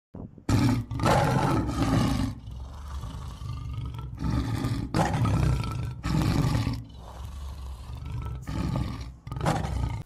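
A big cat roaring several times in a row, each roar a loud, deep drawn-out burst, the longest lasting about two seconds.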